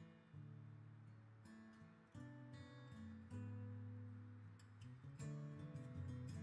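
Quiet background music on acoustic guitar: plucked notes ringing on, one after another.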